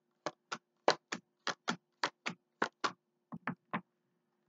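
Tarot cards being dealt one after another from a hand-held deck onto a wooden table: a quick run of short, sharp card snaps and taps, about three or four a second.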